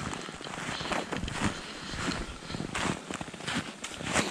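Footsteps crunching through shallow snow, an uneven series of steps with some louder crunches.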